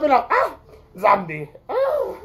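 A man's voice making drawn-out vocal sounds that rise and fall in pitch, about four of them, with no clear words.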